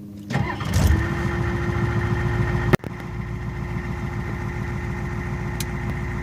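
Ford 6.9 L IDI V8 diesel warm start: the engine catches about a third of a second in and settles into a steady idle with a constant whine over it. The sound breaks off for an instant just before the three-second mark.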